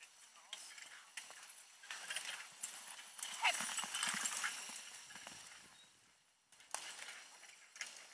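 Hoofbeats of a single horse trotting with a marathon carriage in tow. They grow loudest as it passes, about three to five seconds in, then fade as it moves away.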